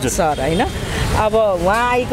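Only speech: a woman talking.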